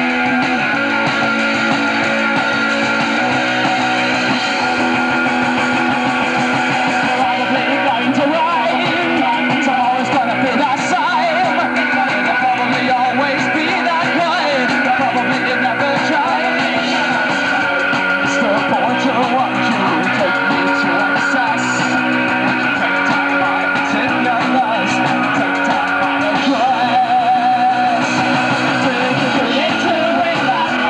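Live punk rock band playing a song with electric guitar, bass and drums, a man singing from about eight seconds in.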